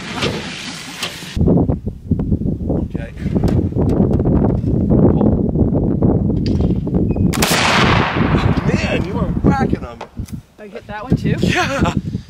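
Flintlock Pedersoli Northwest trade gun (a smoothbore black powder gun) fired once about seven seconds in: a single sharp report with a trailing echo. Before it there is a steady low rumble.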